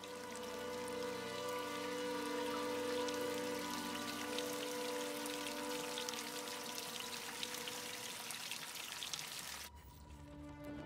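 Water pouring and splashing, with many small drips and splatters, getting louder over the first few seconds and cutting off abruptly near the end. A sustained droning music chord runs underneath.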